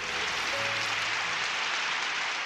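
Audience applause, a steady even clapping that starts at once at the close of a recited poem, with soft background music under it.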